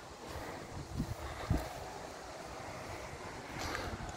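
Wind buffeting the microphone: a low, uneven rumble over a faint steady outdoor hiss, with a couple of soft thumps about a second in.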